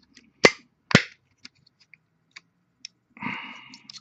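Two sharp plastic snaps about half a second apart as the action figure's thrusters peg into place, followed by a few faint plastic handling ticks.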